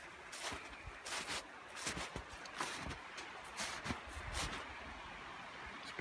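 Footsteps crunching in soft snow, about two steps a second, stopping about four and a half seconds in, over the faint steady rush of a creek just freed of ice.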